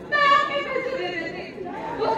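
Speech: one voice speaking in a large hall, with crowd chatter behind it.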